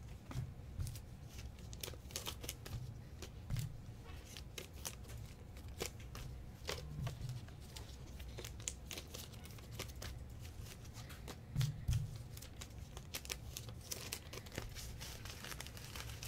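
Clear plastic card sleeves and resealable bags crinkling and rustling as trading cards are slid into them, with many small scattered clicks. A single dull bump about three quarters of the way through is the loudest moment.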